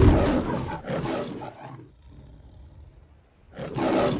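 Logo-animation sound effects: a loud hit with a roar that fades away over about two seconds, a quiet gap, then a rising swell near the end.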